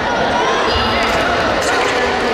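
Many overlapping voices, calls and shouts in a large, echoing sports hall, with no single speaker standing out.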